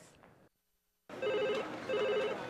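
Silence, then about a second in a telephone starts ringing: a trilling ring in short bursts, two of them by the end.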